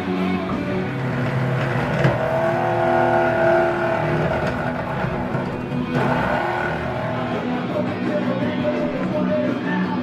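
Electric drill whining as it drives screws into plywood, its pitch rising and falling as the motor speeds up and slows, over background music.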